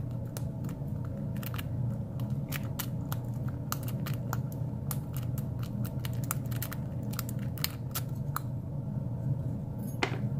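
Bogota lock-picking rake scrubbed and rocked in the keyway of a Wilson Bohannan brass padlock under tension: a rapid, irregular run of small metallic clicks as the pins are bounced, thinning out near the end, over a steady low hum.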